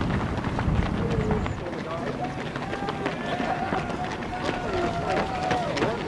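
Running footsteps of many marathon runners on an asphalt bridge roadway, a quick patter of footfalls throughout. A low rumble drops away about a second and a half in, after which voices call out over the footsteps.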